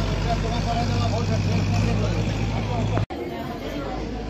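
Vehicle engine idling with a steady low hum under people talking; the sound cuts out abruptly about three seconds in, and after that only voices remain.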